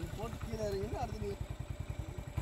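Motorcycle engine running at low revs, an even low pulse of firing strokes, as the bike creeps up a rough dirt track.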